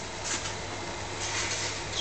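Workshop room tone: a steady low hum under a faint even hiss, with a couple of faint, brief noises.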